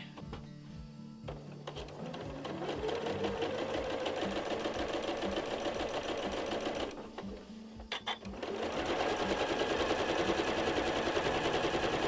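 Electric sewing machine stitching a seam through two layers of cotton fabric, its needle running in fast, even strokes. It stops briefly about seven seconds in, then starts again and runs louder.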